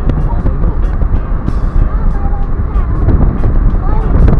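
Steady low rumble of road and wind noise from a Mitsubishi Mirage on the move.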